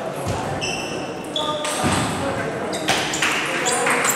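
Table tennis ball being served and knocked back and forth, short sharp clicks off the paddles and table, over steady spectator chatter in a large hall.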